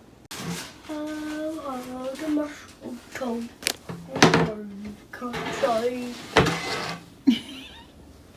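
A young boy singing a Christmas song, with held notes that slide in pitch, broken by a few sharp knocks.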